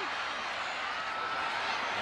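Football stadium crowd noise, a steady din of many voices.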